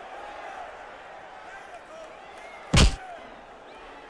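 Boxing arena crowd murmuring with faint scattered shouts. About three seconds in comes a single loud, sharp impact of a punch landing.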